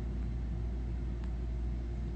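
A steady low background rumble with no speech over it.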